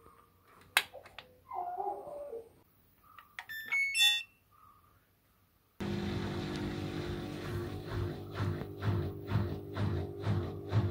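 Click of a washing machine's power button, then the machine's electronic beeps and a short stepped tune as it powers on and is set. The beeps around four seconds in are the loudest. From about six seconds in, background music with a steady beat starts suddenly and carries on.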